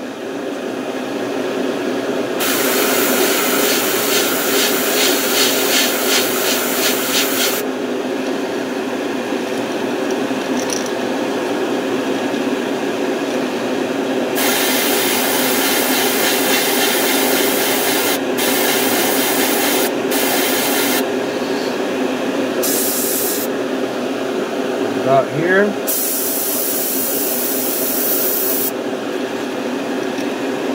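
Airbrush spraying paint in bursts of hiss: one long burst of about five seconds early on, then a run of shorter bursts of a second or several from about halfway through. A steady fan-like hum runs underneath.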